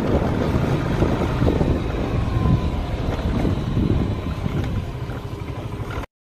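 Wind buffeting the phone's microphone while moving along a street: a steady low rumble that eases a little near the end.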